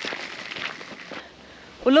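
Footsteps and the small wheels of a pushchair crunching on a gravel path close by, dying away after about a second. A woman starts speaking near the end.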